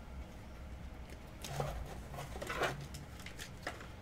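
Quiet handling of plastic card holders, with a few faint soft clicks over a low room hum, and a faint murmured voice about halfway through.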